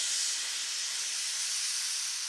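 Hissing synthesized white-noise wash in a progressive psytrance track, slowly fading, with no beat or melody under it.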